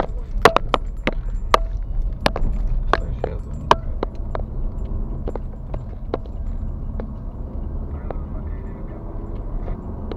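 Car interior driving noise: a steady low rumble of engine and tyres, with frequent sharp knocks and rattles from the car jolting over a rough, patched road surface, densest in the first few seconds and thinning out after.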